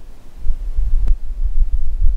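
Low, uneven rumble with no voice, and a single sharp click about a second in.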